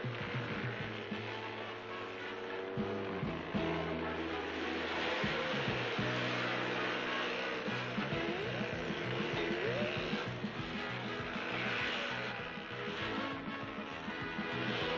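Background music of held notes that change in steps every second or so, over a steady high hiss.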